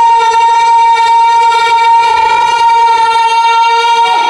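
A young boy's voice holding one long, steady, high sung note into a microphone over a PA system. The note cuts off right at the end.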